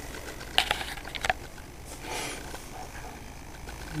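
Homemade Bedini motor's magnet wheel spinning up after a hand spin, with a steady low hum and a few sharp clicks and rattles about half a second to a second and a half in. The wheel rides on an eighth-inch drill-bit shaft on repelling magnets with no bearings, which makes it rattle until it gets up to speed.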